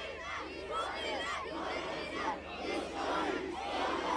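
A large crowd shouting together, many voices overlapping at a fairly even level.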